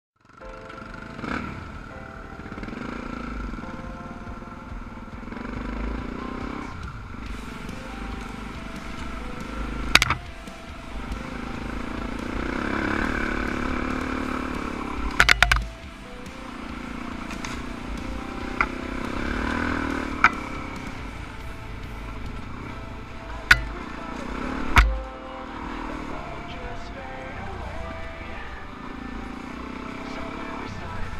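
Dual-sport motorcycle engine running along a dirt trail, rising and falling with the throttle, with a few sharp knocks.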